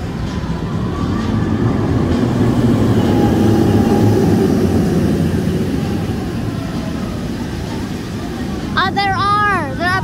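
Steel roller coaster train rumbling along its track, swelling to a peak about four seconds in and then fading. Near the end a high voice sweeps up and down in pitch for about a second.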